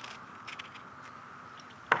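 Faint scraping and small clicks of a blade paring a strip of peel off an orange, with one sharp click near the end.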